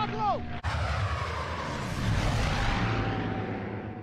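Film sound effects of WWII P-51 Mustang fighters: a radio voice ends, then about half a second in a sudden loud rush of propeller-engine noise and wind starts. Its pitch falls as a plane goes by, and it fades near the end.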